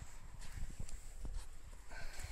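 Footsteps on sandy ground, with irregular soft thumps and scattered clicks of handling as the phone is carried.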